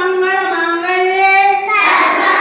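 Schoolchildren chanting a sloka: a single voice holds one long chanted note, and the massed children's voices come in near the end.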